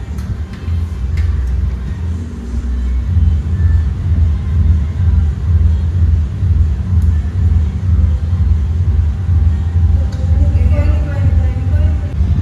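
Loud, deep booming bass from a party sound system, pulsing unevenly, with voices in the room rising near the end.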